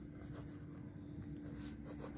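Graphite pencil writing a word on paper: faint, quick scratching strokes.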